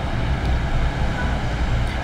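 Steady low rumble with a fainter hiss of background noise, no speech.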